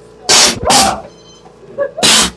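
Short, loud, harsh breathy bursts of a person's voice, like hissed or barked snarls: two in quick succession, the second ending in a brief pitched bark, and another right at the end.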